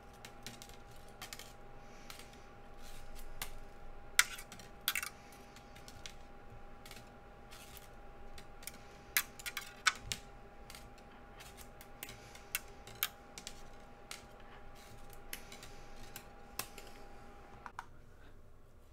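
Sterling silver wire clicking and ticking as a long half-round wire is wrapped by hand in coils around square wires: scattered light clicks, with a few sharper ones about four seconds in and again around nine to thirteen seconds. A faint steady high hum runs underneath and stops just before the end.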